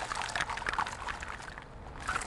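Hollow shells of dead oysters rattling against each other inside a wire-mesh oyster cage as it is shaken: a rapid run of hollow clicks, like castanets, that thins out toward the end. The hollow clatter is the sign that the oysters in the cage are dead.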